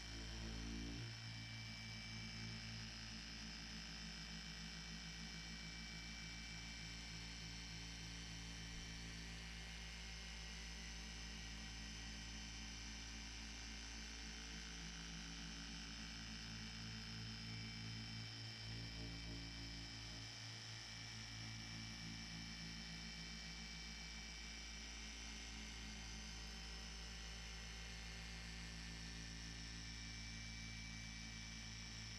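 A 15 mm dual-action polisher with a foam pad running steadily at about its fourth speed, working cutting compound over car paint: a faint, steady motor hum, dipping briefly a little after halfway.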